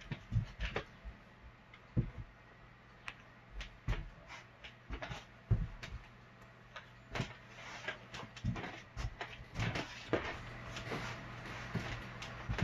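Irregular soft thumps and rustles of a person moving and dancing on the floor close to the microphone, more frequent in the second half, over a low steady hum.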